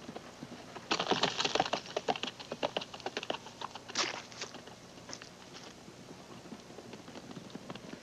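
Polo pony's hooves galloping on turf, a fast patter of thuds that is densest from about one to three and a half seconds in, with one sharp knock about four seconds in, then fewer, lighter hoofbeats.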